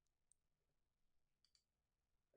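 Near silence: room tone, with two very faint clicks.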